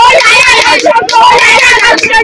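Crowd of spectators shouting and chattering, many voices overlapping, loud throughout.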